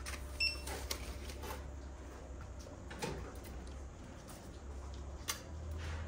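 Post office counter sale being rung up: a short electronic beep about half a second in, then scattered light clicks and paper handling from the clerk, over a low steady hum.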